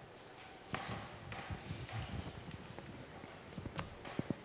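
A run of soft, irregular knocks and rustles starting about three-quarters of a second in, with a sharper click near the end.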